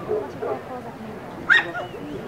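People talking close by, with one short, sharp yelp about one and a half seconds in, the loudest moment.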